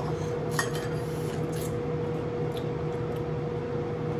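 Forks clicking against crab-leg shells and porcelain bowls as crab meat is picked out, a few sparse light clinks over a steady background hum.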